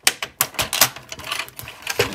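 Hard plastic parts of a large transforming robot toy's trailer clicking and knocking as hands release its tabs and pull the sections apart: an irregular run of sharp clicks and taps.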